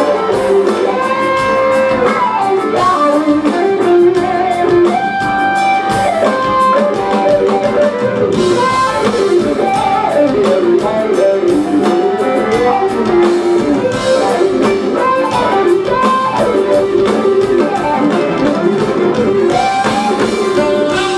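Live smooth jazz band: an electric guitar plays a busy lead line of quick single notes over drum kit, bass guitar and percussion.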